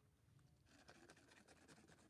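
A cat eating wet food from a plastic tub: a quick run of faint, wet chewing clicks starting a little under a second in.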